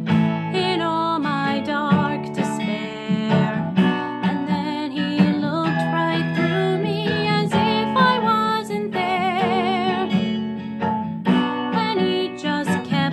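A woman singing over a violin plucked and strummed like a guitar, pizzicato chords under the melody. Late on she holds one long note with vibrato.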